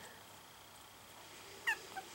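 A very young Miniature Schnauzer puppy gives a short, high-pitched squeak about one and a half seconds in, then a brief fainter one just after.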